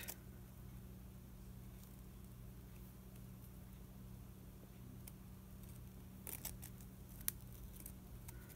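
Quiet room with a steady low hum, under faint rustles of needle and thread being worked through burlap ribbon around a paperclip, with a few small clicks a little after six seconds in and once more near the end.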